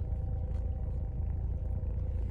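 Steady low rumble of a car's cabin, with a faint steady hum that starts as a bite is taken from a chocolate protein pop-tart and chewed with the mouth full.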